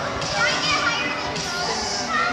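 Children's voices and calls from around the play hall, with music in the background.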